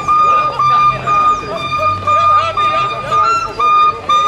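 A saxophone sounding one high note over and over: about eight short blasts of the same pitch, each about half a second long.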